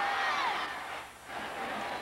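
Football stadium crowd noise under a TV broadcast, with a voice trailing off near the start and a brief dip in loudness about halfway through.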